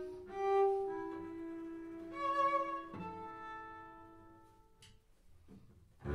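Cello and double bass playing slow bowed notes together: a few soft held notes that fade away to a faint level in the second half.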